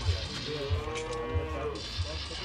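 A cow mooing: one long call that rises and falls, over a low repeating beat.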